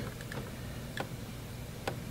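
Quiet room tone with two faint, short clicks, one about a second in and one near the end.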